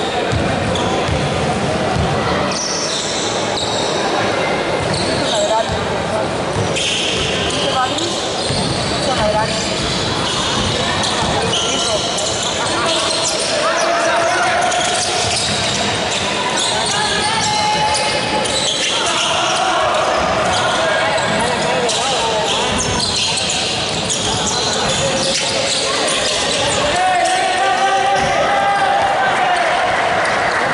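A basketball being dribbled on a hardwood gym floor during play, with players and spectators calling out and shouting in the hall.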